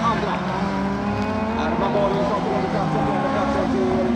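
Engines of several folkrace cars running at once, overlapping at different steady pitches that rise and fall a little.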